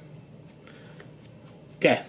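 A few faint snips of fine-point scissors trimming deer hair on a fly, with a man starting to talk near the end.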